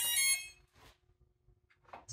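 A short burst of electronic startup beep tones from the RC model jet's onboard electronics as its main battery power is connected, lasting about half a second, followed by quiet with a faint click.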